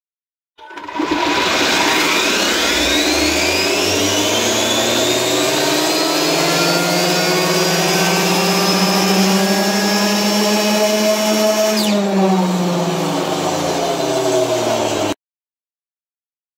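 Arrma Limitless RC car's Castle 2028 800kV brushless motor and drivetrain spinning the wheels on a roller dyno under full-throttle test: a whine that rises steadily in pitch over about five seconds as the car spools up, holds near top speed, then drops in pitch as it winds down about twelve seconds in. The sound starts half a second in and cuts off suddenly near the end.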